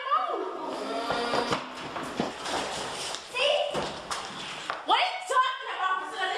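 Girls talking, with a few dull thuds about a second in, around two seconds in and near four seconds in.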